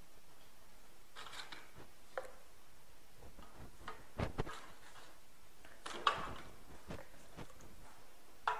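Soft handling noises of coffee-soaked petit beurre biscuits being laid and pressed into a loaf tin: a brief scrape about a second in, then a couple of light knocks against the tin around the middle.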